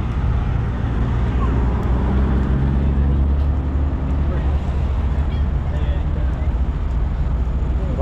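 Steady low rumble of heavy diesel semi-truck engines idling, with faint voices in the background.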